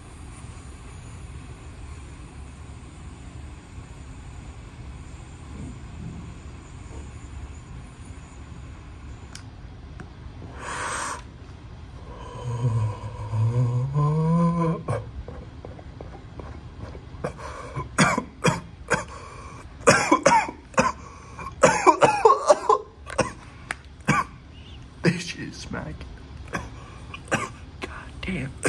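A man coughing hard and repeatedly after a hit of cannabis smoke, in an irregular fit over the last ten seconds. Before the fit come a short breathy exhale and a low rising groan.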